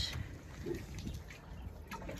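Uneven low rumble of outdoor background noise on a rocky shore, with a brief faint voice about two-thirds of a second in.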